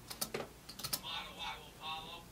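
A quick run of computer keyboard key clicks in the first second.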